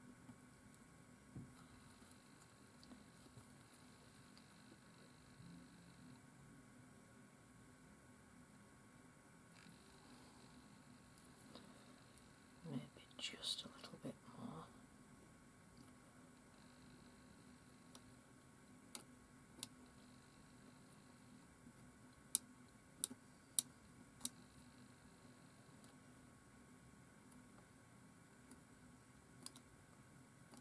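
A craft knife shaving a thin wooden twig in near silence: a few sharp little snicks of the blade cutting, two together, then a quick run of four, then one more near the end. About halfway through there is a short breathy sound, like a sigh or whisper.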